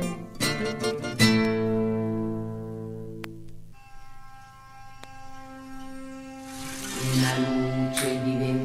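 Instrumental music on plucked string instruments: a few quick plucked notes, then a chord that rings and breaks off about four seconds in. Soft held tones follow, and near the end a rush of noise brings in a fuller chord with low notes.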